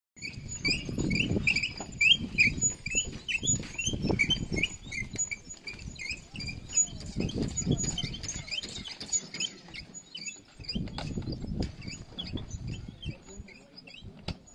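Small birds chirping in quick, repeated short calls, about two or three a second, fading in the second half, over irregular low rumbling bursts on the microphone.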